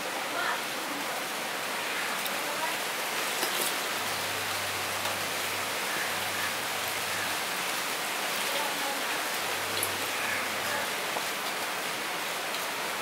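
Fingers mixing dal on a steel plate, with faint wet squelches and light ticks against the metal, under a steady hiss.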